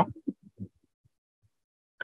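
A man's voice trailing off in a few faint, short low murmurs, then complete silence.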